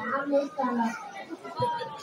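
Young children's voices: a child speaking among other children's chatter, with a short low knock about one and a half seconds in.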